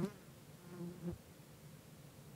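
A flying insect buzzing briefly past the microphone, a low steady hum for about half a second that stops a little after the first second.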